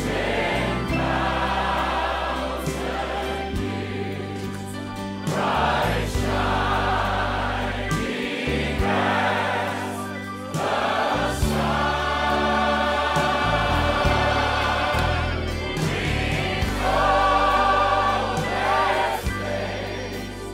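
A large mixed group of voices singing a slow gospel hymn together in long held notes, with short breaks between phrases, over steady low accompaniment.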